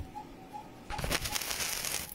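Scratchy rustling of a phone being handled close to its microphone through the second half, over a faint short chirp repeating about three times a second.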